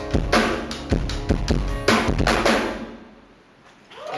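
Live rock band closing a song: a run of drum-kit hits with cymbals over guitars, a last accented hit about two seconds in, then the band's final chord ringing out and fading away.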